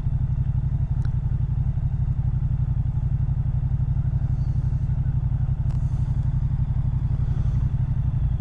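Moto Guzzi V100 Mandello's 1042 cc 90-degree V-twin idling steadily, a low even pulse with no revving.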